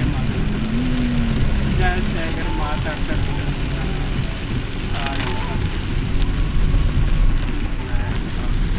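Car driving on a wet road in the rain, heard from inside the cabin: a steady rumble of engine and tyres with the hiss of rain and spray. Voices talk briefly at times.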